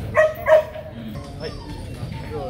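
H'Mong bobtail dog barking twice in quick succession, two short barks about a third of a second apart.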